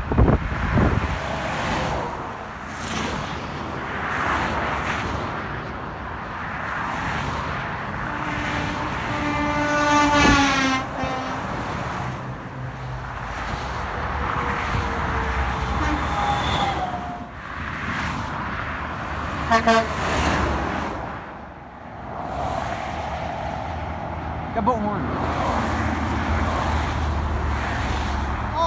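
Highway traffic passing, tyre and engine noise of cars and semi trucks. About nine seconds in, a truck's air horn sounds for about two seconds, its pitch dropping near the end as it goes by.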